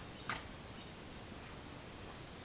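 Steady high-pitched chorus of insects in summer woodland, with one brief sharp sound about a third of a second in.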